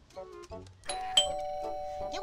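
Electronic two-tone doorbell chime from a gate intercom unit as its button is pressed: a higher tone and then a lower one a moment later, both held ringing, over light background music.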